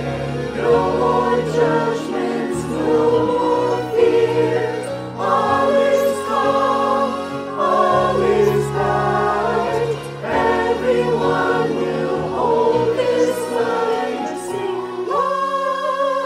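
Mixed-voice church choir singing in harmony over sustained low accompaniment notes. Near the end the voices rise to a held higher note.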